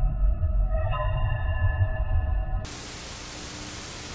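Eerie ambient background music with long held tones over a low rumble, cut off about two and a half seconds in by a steady hiss of TV static.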